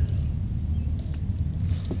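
Low wind rumble on the microphone. Right at the end, the Parrot AR.Drone's four electric rotors spin up with a high whine that starts to rise as the drone lifts off the ground.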